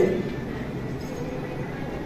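A steady low hum of background noise in a room, with no distinct events.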